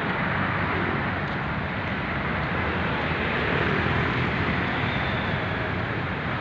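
Steady road traffic on a busy multi-lane city boulevard: a continuous wash of car engines and tyres passing below.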